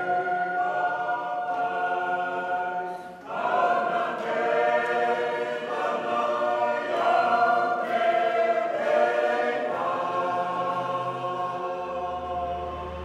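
A Fijian church congregation of men and women singing a hymn together in harmony, holding long notes. The singing breaks off briefly about three seconds in and comes back louder on the next line.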